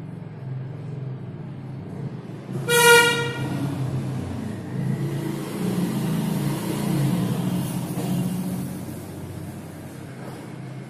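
A vehicle horn honks once, briefly, about three seconds in, over a steady rumble of road traffic that swells in the second half.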